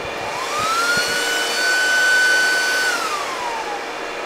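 Small high-speed cooling fan of a server power supply spinning up as the mining rigs are powered on: a whine that rises in pitch, holds steady for about a second and a half, then winds down to a lower pitch near the end. A steady fan hiss runs underneath.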